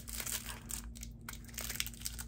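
Plastic wrapping on a small remote control crinkling and crackling with irregular light clicks as it is handled and picked at to open it.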